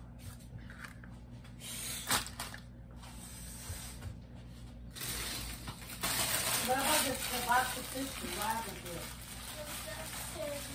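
Faint voices off to the side, clearest from about six seconds on, over a steady low hum, with one sharp click about two seconds in.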